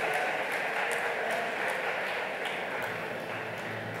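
Audience applauding, the clapping slowly fading.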